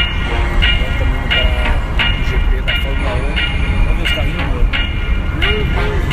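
Steady low rumble of a car driving, heard inside the cabin. Over it plays music with a short bright note repeating about every two-thirds of a second, and a man's voice talks along.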